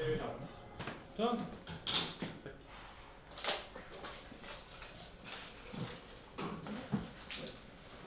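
Quiet, indistinct voices murmuring in a small room, with a couple of brief handling noises about two and three and a half seconds in.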